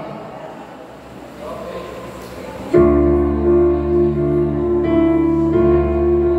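A keyboard comes in abruptly about three seconds in with held, sustained chords: the instrumental introduction of a hymn just before the group starts singing. Faint room murmur comes before it.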